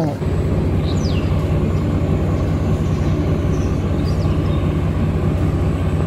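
A vehicle engine running steadily at idle: a low, even hum with a fast regular pulse. A short high descending chirp sounds about a second in.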